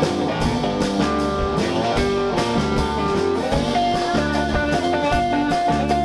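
Live band playing an instrumental break: electric guitar lead with bent, gliding notes over strummed acoustic guitar, electric bass and a drum kit keeping a steady beat.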